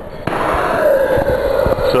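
A handheld gas torch's flame comes on suddenly, a loud hiss with crackles, as it is put to the charcoal to light the gasifier. Under it runs the steady hum of the startup fan.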